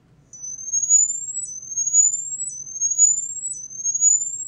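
Piezoelectric (PZT) patch on a bolted test structure giving out a thin high tone that sweeps upward from about 6 to 8 kHz, four rising sweeps of about a second each. It is the excitation sweep of an impedance-method structural health monitoring test run.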